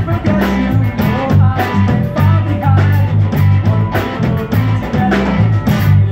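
Live rock band playing: electric guitar, electric bass and a drum kit, with the drums keeping a steady beat under sustained bass notes.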